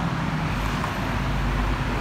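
Steady urban traffic noise: a constant low rumble of road vehicles with an even hiss over it.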